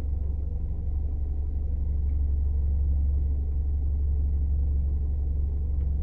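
Vehicle engine idling while stationary, a steady low rumble heard from inside the cabin.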